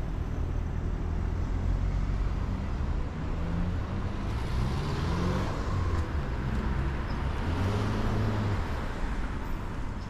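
City street traffic: cars driving past close by, a steady engine and tyre rumble that swells about halfway through and again near the end as vehicles pass.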